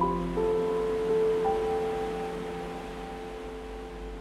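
Soft solo piano: a few notes struck in the first second and a half, left ringing and slowly fading, over a steady wash of ocean surf.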